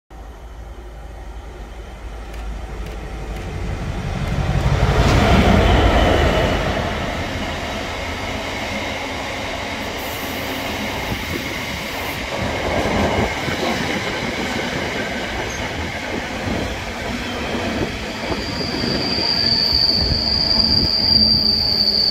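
GBRF Class 66 diesel freight locomotive 66763, with its two-stroke V12 engine, approaching and passing close by, loudest about five seconds in, followed by a long rake of intermodal container wagons rolling past with a steady rumble of wheels on rail. A high, steady wheel squeal sets in near the end.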